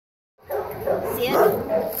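A dog whining, with a short held whine near the end.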